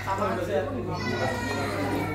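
Indistinct voices of several people talking over one another, with a steady low hum underneath.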